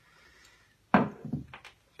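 Phone rig on a bendable tripod being handled on a wooden tabletop: a faint rustle of handling, then a sharp knock as it meets the wood about a second in, followed by a couple of lighter taps.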